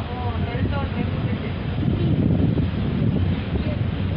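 Steady low rumble of a passenger train coach running on the track, heard from an open doorway, with people's voices over it in the first second.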